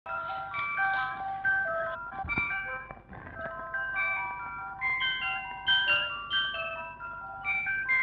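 Instrumental introduction of a 1960s Hindi film song: a melody of short, stepping notes with a bright, chime-like tone, and a sharp percussive hit a little over two seconds in.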